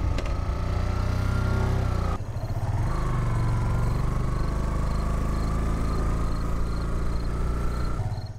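Motorcycle engine running steadily at low speed, a low hum with a faint whine above it and a short dip about two seconds in.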